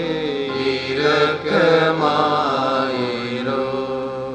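Slow devotional hymn: voices singing long-held notes over electronic keyboard accompaniment.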